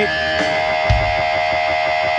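Distorted electric guitar holding a steady sustained tone, with a single low thump about a second in.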